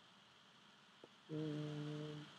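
Quiet room tone, then about 1.3 s in a man's voice holds a steady, unchanging hum or drawn-out 'um' for about a second. A faint tick comes just before it.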